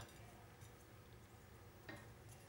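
Near silence, with a faint ticking rattle of sesame seeds being shaken from a small glass spice jar.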